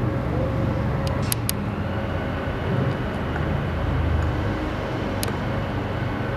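Outdoor urban background noise: a steady low rumble with a faint hum and a few sharp clicks, about a second in and again near the end.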